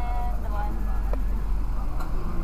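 Car engine idling, a low steady hum. A brief steady-pitched tone fades out in the first second, and a single click sounds about a second in.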